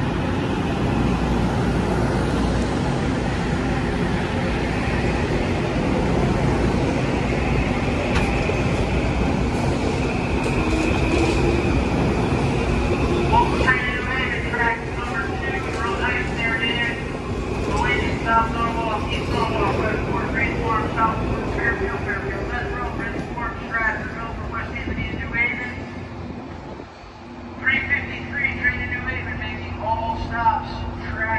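Metro-North Kawasaki M8 electric multiple-unit train pulling out and rolling past at close range: a steady rumble of wheels and running gear with a high whine. The noise dies down in the second half as the last cars clear the platform.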